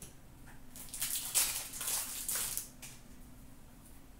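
Hockey trading cards being handled and shuffled by hand: a dry rustling and sliding of card stock lasting about two seconds, starting about a second in.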